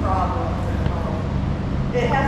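People's voices talking in the background, not clearly worded, over a steady low hum.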